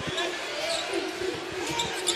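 A basketball being dribbled on a hardwood court, with a few dull bounces under a steady murmur from the arena crowd.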